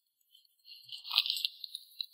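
A sheet of paper crinkling and rustling as it is gripped in the hands, starting a little over half a second in.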